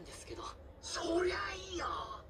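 Speech: a character's line of Japanese dialogue from the anime, heard through the video's sound.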